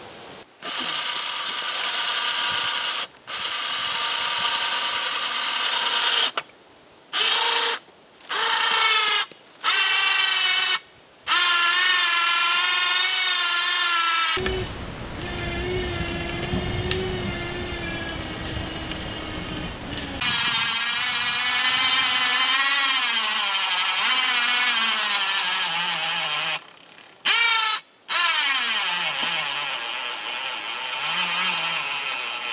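Electric winch motor whining as it pulls a felled tree. It cuts out and restarts several times in short pulls, and its pitch sags and wavers as it strains under the load. Midway there is a stretch of lower rumbling noise.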